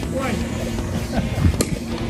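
People's voices calling out and laughing over a steady low rumble of wind on the microphone, with one sharp click about one and a half seconds in.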